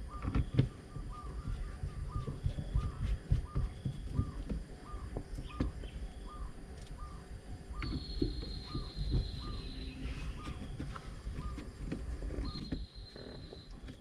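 Hand screwdriver driving screws into a car's plastic centre console: irregular clicks, knocks and scraping as the screws are turned. A faint short chirp repeats about twice a second, and a high thin tone sounds twice in the second half.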